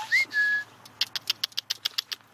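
A person whistling two short notes, a brief rising one and then a steady higher one. About a second in comes a quick run of sharp clicks, roughly seven a second.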